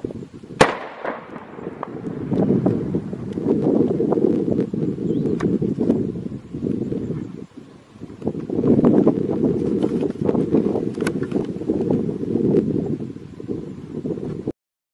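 An explosion about half a second in: one sharp blast whose sound dies away over the next second or so. A dense low rumble follows, broken by scattered sharp cracks and pops, with another loud crack near eleven seconds.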